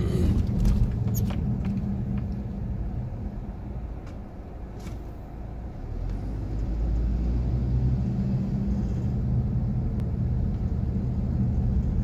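Car engine and road noise heard from inside the cabin while driving slowly through residential streets: a steady low hum that eases off about four seconds in, then picks up again as the car gets going.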